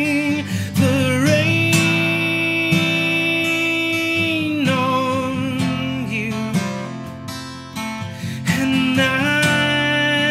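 A man singing long held notes with vibrato to his own strummed acoustic guitar. One note is held for about three seconds early on, and another begins near the end.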